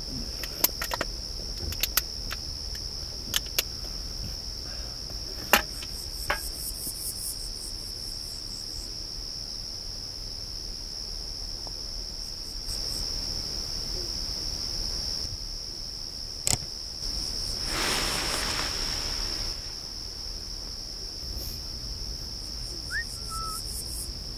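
Steady, high-pitched chorus of crickets trilling without a break. A few sharp clicks stand out in the first seven seconds and once more past the middle, with a brief noisy swell a few seconds later and a short rising note near the end.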